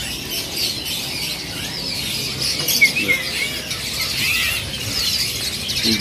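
Many caged songbirds chirping and calling at once: a dense, overlapping chorus of short high chirps that goes on without a break.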